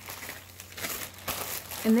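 Clear plastic bag crinkling and rustling irregularly as it is handled.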